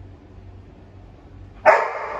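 Golden retriever giving one loud bark on the trained "speak" cue, about a second and a half in, after a quiet stretch.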